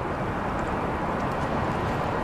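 Steady low rumbling background noise in a parking garage, with no distinct sounds standing out.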